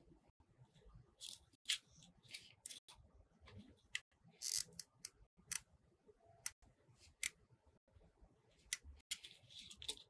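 Faint, irregular small clicks and light scrapes of hand crafting work: small pearl beads picked up, touched to a hot glue gun's nozzle and pressed onto a glitter foam disc.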